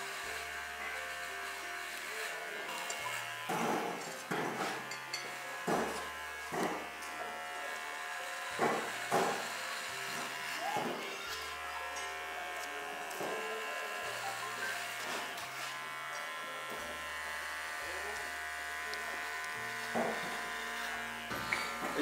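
Electric hair clippers buzzing steadily while a head is shaved down to bare skin.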